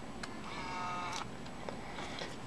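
A fingertip tap on a touchscreen, then a short electronic tone of about three-quarters of a second from the Samsung Galaxy Camera's small built-in speaker, dipping slightly in pitch as it stops.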